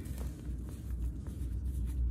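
Hands crushing a lump of dyed baking soda: soft, scattered crunching and crumbling as the powder breaks up and falls through the fingers, over a steady low rumble.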